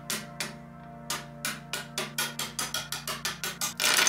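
Hard plastic 3D-printed counter parts being set down one by one on a wooden tabletop, sharp clicks that come faster and faster, ending in a clatter of many parts near the end. A soft music bed plays underneath.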